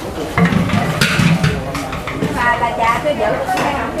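Washing up by hand: metal pots, bowls and plastic basins knock and clatter several times against a steady wash of splashing water. Voices talk in between.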